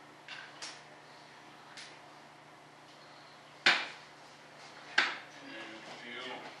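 Small tools and parts being handled on a workbench: a few light clicks, then two sharp knocks a little over a second apart, the loudest sounds here.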